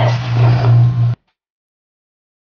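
Steady low hum with faint handling noise, cut off abruptly just over a second in.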